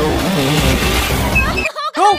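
Motorcycle engine running as it rides along, mixed with a soundtrack that carries a voice. Both cut off abruptly just before the end.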